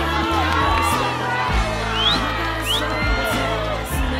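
Background music with a steady, heavy bass line, under a stadium crowd of football fans cheering and shouting, with a few short rising high calls cutting through.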